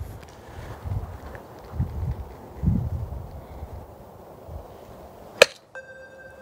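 A golf club striking the ball once on a short chip shot off a turf hitting mat, a single sharp click about five seconds in.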